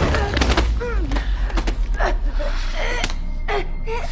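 Fight-scene sound effects: a quick series of sharp blows and swishes as two fighters trade strikes, with short grunts and gasps of effort between them, over a low rumbling score.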